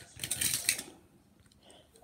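Handling noise close to the microphone: a rattle of small clicks and rustling for under a second, then faint.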